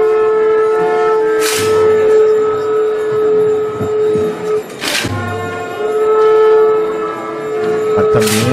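Procession band playing a slow funeral march: long held wind notes, with a loud cymbal-and-drum crash about every three and a half seconds.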